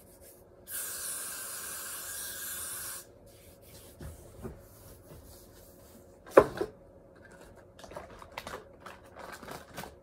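An aerosol spray can sprayed in one steady hiss of about two seconds, starting and stopping sharply, under a second in. A single loud knock comes about six seconds in, followed by light taps and rustling near the end.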